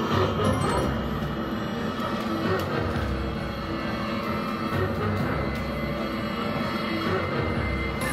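Wolverton video slot machine playing its spooky theme music during a free-spins bonus round.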